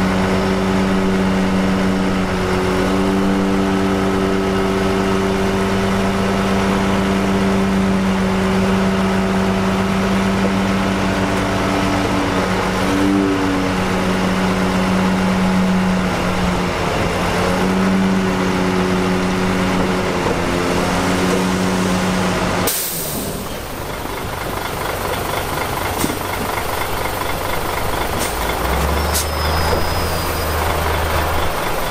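Heavy diesel dump truck engine running at a steady speed while the hydraulic hoist lifts the loaded bed to tip dirt. About 23 seconds in, the sound cuts abruptly to a rougher engine noise, and a deeper hum comes in near the end.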